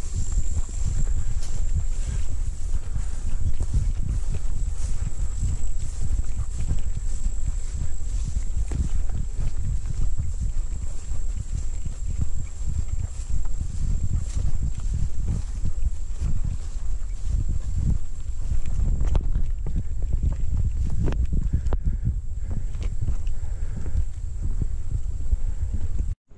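A hiker's footsteps and the swish of tall, overgrown brush against body and pack, with heavy rumbling handling noise on the handheld camera's microphone. A steady thin high tone sits behind it.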